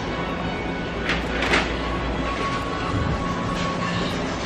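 Steady shop background noise with music playing faintly, and two short noises a little over a second in.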